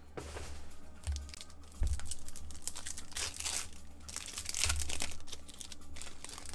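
Foil wrapper of a 2023-24 Elite basketball card pack being torn open and crinkled, in several irregular bursts, as the cards are pulled out.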